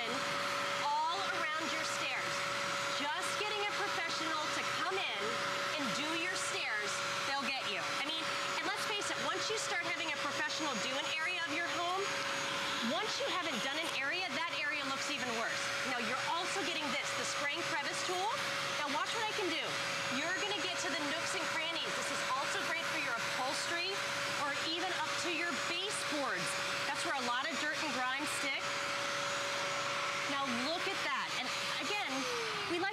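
Bissell Spot Clean Pro portable carpet deep cleaner running steadily: its motor holds one constant mid-pitched whine over a rushing suction hiss while the hand tool is worked over the carpet.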